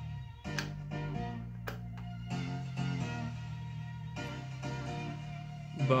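Guitar music playing back from a cassette on a Kenwood KX-550HX stereo cassette deck, with held notes changing every second or so.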